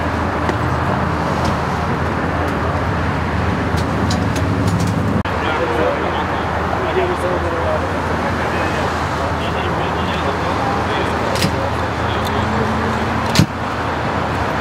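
Steady freeway traffic noise with an idling vehicle engine's low hum, and indistinct voices of the crew. A few short knocks, the loudest near the end.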